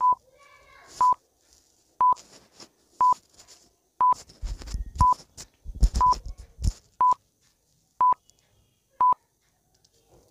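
Film-leader countdown timer sound effect: a short, high beep once a second, ten beeps in all. Low thuds and crackle come between the beeps around the middle.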